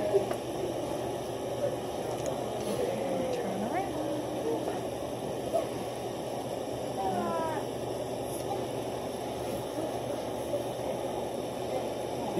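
Indistinct, murmured talk from several people, with no clear words, and a few brief high voice glides now and then.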